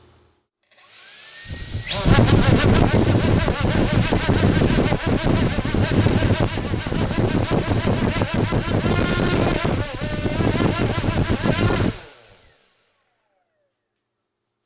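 KDE Direct XF-series brushless multirotor motor, driven by its matched XF ESC, spinning up with a rising whine, then running loud and steady with a deep hum for about ten seconds. Near the end it cuts off suddenly and winds down with falling tones.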